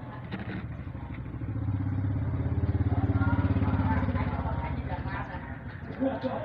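A motorcycle engine passing by, its low, rapidly pulsing note swelling to a peak in the middle and then fading.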